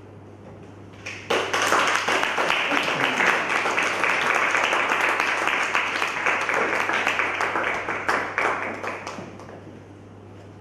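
Audience applauding, starting suddenly about a second in and dying away near the end.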